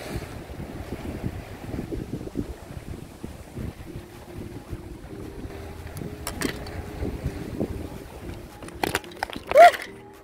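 Strong sea wind buffeting the microphone in uneven gusts, with scattered knocks of the camera being handled. Near the end comes one short, loud cry.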